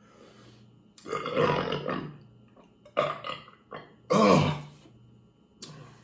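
A man belching after gulping down a glass of beer: a long rough belch about a second in, a few short bursts around three seconds, and a shorter pitched belch at about four seconds.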